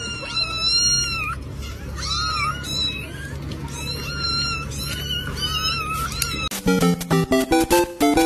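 Kittens mewing over and over, high-pitched calls overlapping one another above a low steady hum. About six and a half seconds in, this cuts to bouncy music of short plucked notes.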